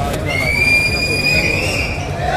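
A long, shrill whistle from the audience, held for well over a second and rising slightly in pitch, over crowd noise.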